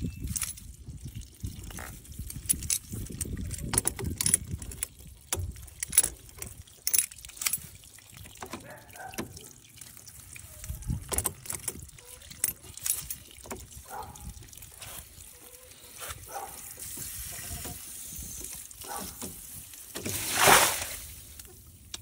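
Water draining and trickling out of the opened bottom cap of a homemade PVC first flush diverter onto grass, with many small clicks and scrapes of pliers handling the cap. Near the end there is one loud splashing rush as more water comes out.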